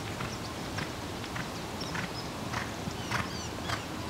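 Hoofbeats of a ridden Australian Stock Horse gelding moving on arena sand, a regular beat about every 0.6 s, with small birds chirping.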